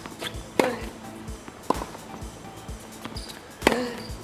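Tennis ball struck by a racket three times: a loud serve strike about half a second in, a fainter hit just under two seconds in, and another loud strike near the end. Background music with a steady beat plays throughout.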